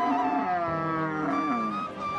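A cow lowing once, a long moo starting about half a second in and dropping in pitch as it ends, over background music.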